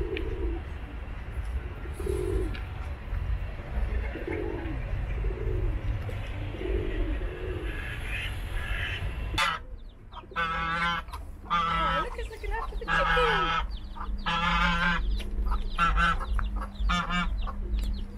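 Pigeons cooing, short low calls about once a second. Then, from about halfway, a hen clucking in quick runs of short calls.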